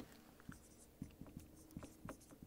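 Dry-erase marker writing on a whiteboard: a handful of faint, short strokes and taps as letters are drawn.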